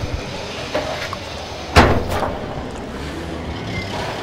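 Street ambience with the steady noise of passing traffic, broken by a sharp bang just under two seconds in and a couple of fainter knocks around it.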